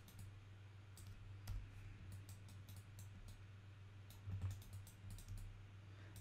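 Faint computer mouse and keyboard clicks at an irregular pace, over a low steady hum.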